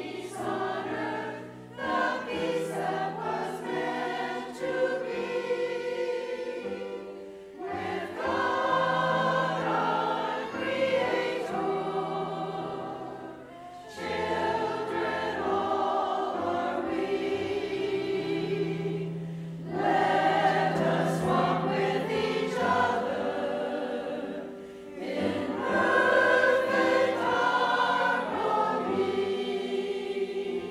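A church choir of mostly women's voices singing a choral anthem in phrases of about six seconds, each separated by a short breath break, over held low notes.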